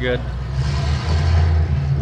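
Low rumble of a motor vehicle's engine running nearby, swelling for about a second in the middle, over a steady low drone.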